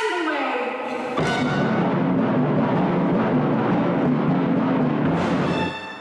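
Orchestral music: a dense, full passage comes in about a second in and holds loud, then falls away shortly before the end.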